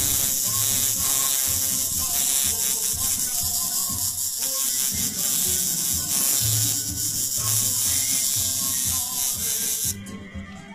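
Music with a steady beat, over the buzz of an electric tattoo machine inking skin, heard as a strong steady hiss that cuts off suddenly near the end.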